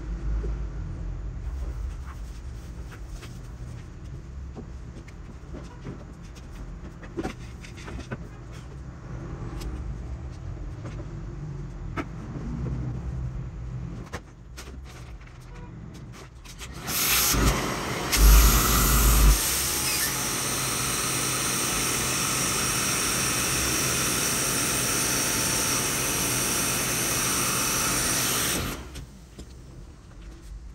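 A vacuum motor runs steadily for about twelve seconds, sucking the air out of a plastic vacuum storage bag through its valve, then cuts off. She takes the air she heard for a small hole in the bag. Before it, quiet rustling and clicks of the plastic bag being handled.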